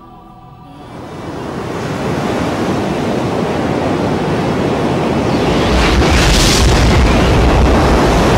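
A swelling rush of noise that builds steadily over several seconds into a deep rumble, with a bright hissing flare about six seconds in: a produced whoosh-and-rumble effect rising towards an explosion-like boom.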